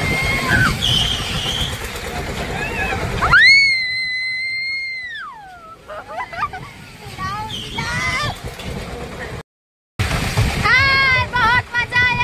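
Riders on a fairground Ferris wheel screaming and laughing over rushing wind noise. About three seconds in, one long high scream holds steady and then falls away. Laughter follows, and after a moment of silence, a quick string of excited shrieks.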